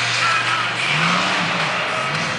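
Mega mud truck's engine running hard under load as it climbs a dirt mound, revving up about a second in and again near the end.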